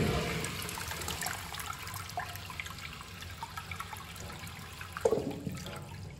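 A 1960s Eljer urinal flushed by its chrome flushometer valve: a sudden rush of water as the handle is pressed, settling into steady running water, with a second brief surge about five seconds in.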